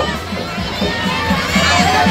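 A large crowd of devotees shouting and cheering together, many voices at once without a break.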